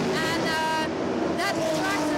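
Crowd chatter, several people talking at once, over a steady low drone of race car engines running on the circuit.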